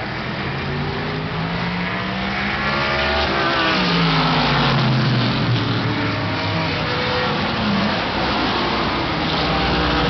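A pack of vintage big-bore production race cars and sedans running together, their engine notes overlapping and rising and falling in pitch as they brake, shift and accelerate, growing louder about four seconds in as the field closes in.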